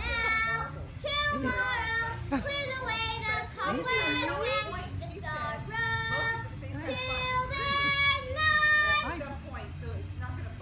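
A child singing in a high voice, a string of held notes with a swooping slide down and back up about four seconds in.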